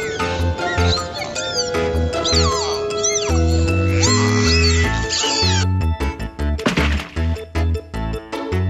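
Dolphin whistles, a run of squeaky rising-and-falling calls, over children's background music with a steady bass beat; the whistles stop about five and a half seconds in and the music runs on.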